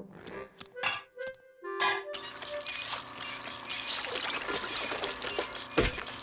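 Cartoon soundtrack: a few short sound effects and held music notes, then from about two seconds in a busy, continuous sound effect of a taffy-pulling machine working under music, with one heavy thump near the end.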